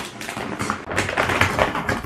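Rummaging in a shopping bag: a dense, irregular crinkling and rustling of the bag and the packaging inside it as items are handled.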